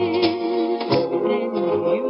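A woman singing a slow ballad, holding a note with vibrato in the first second, over instrumental accompaniment.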